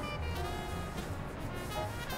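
Background music with sustained, held notes.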